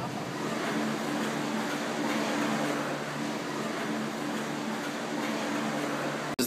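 Steady mechanical running noise with a constant low hum of the Maokong Gondola station's cable-drive machinery.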